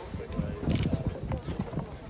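Street ambience with indistinct voices in the background and irregular low rumbling.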